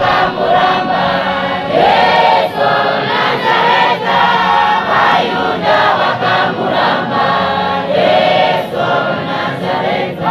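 Large congregation singing a hymn together in many voices, as a choir.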